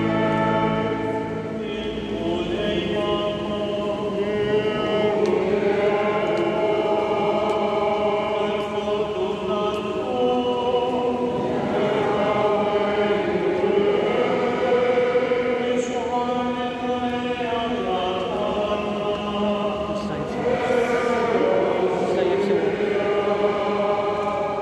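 A choir singing a slow hymn, several voices holding long notes that change pitch every second or two.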